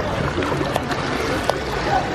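Swimming-pool water splashing and sloshing as people move through it close by, with a few sharp splashes.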